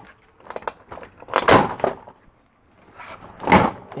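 Plastic retaining clips of a Jeep Wrangler JK's front grille unsnapping as the grille is pulled off: a few light clicks about half a second in, then two louder pops, about a second and a half in and near the end.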